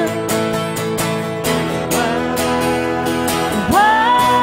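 Acoustic guitar strumming steady chords under a country ballad, changing chord about a second and a half in. Near the end a woman's singing voice slides up into a long held high note.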